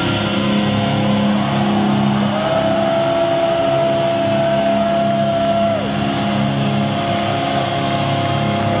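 Live rock band with distorted electric guitars holding a loud, steady chord that rings on, a single high note sustained over it from about two seconds in until near six seconds.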